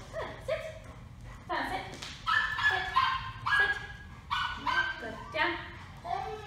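Presa Canario giving a string of short, high-pitched whines and yips, about a dozen in quick succession.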